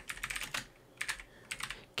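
Computer keyboard being typed on: quick key clicks in three short runs with brief pauses between them.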